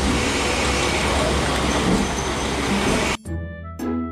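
Diesel railcar running at a station platform: a steady low engine rumble under a loud, even wash of noise. It is cut off suddenly about three seconds in by background music.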